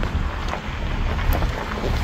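Wind buffeting the phone's microphone: an uneven low rumble.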